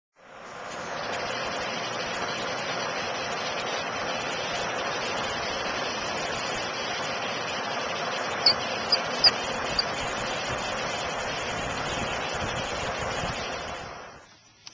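Steady hiss of rushing noise that fades in over the first second and then holds level. Four short high-pitched chirps come a little past the middle, and the noise drops away near the end.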